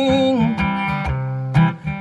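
Steel-string acoustic guitar strumming a blues accompaniment. A woman's held sung note, wavering in pitch, trails off about half a second in.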